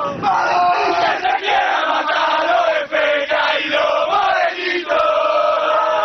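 A group of football fans singing a terrace chant together in Spanish, loud and continuous, many male voices in unison.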